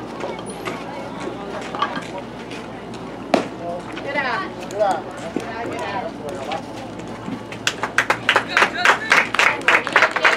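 Spectators at a youth baseball game talking and calling out. About three seconds in there is a single sharp crack of the bat meeting the ball, followed by rising voices. From about eight seconds on the crowd claps rapidly as the batter runs to first.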